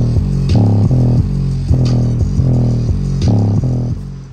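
Bass-heavy music with a loud, rhythmic bass line played hard through a Westra 4.5-inch woofer in an enclosure.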